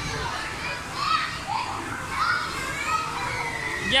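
Background din of children playing: several high children's voices calling out briefly here and there over a steady murmur of crowd noise.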